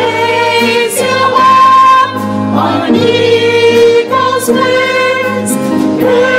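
Gospel choir singing held notes over piano, drum kit and guitar, the chords changing every second or two with cymbal strikes.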